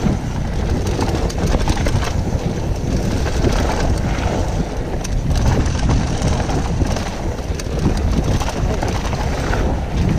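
Wind buffeting the action-camera microphone over the tyres of a full-suspension mountain bike rolling fast on loose dirt and gravel, with a constant run of small knocks and rattles from the bike over the rough trail surface.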